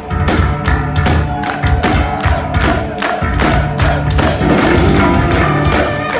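Heavy metal band playing live: a drum kit keeping a steady beat of cymbal strokes, about two or three a second, under electric guitars and bass.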